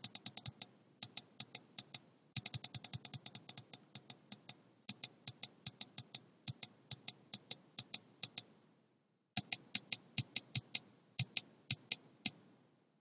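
Computer mouse button clicked over and over in quick, uneven runs of about three to five clicks a second, with a pause of about a second near the end.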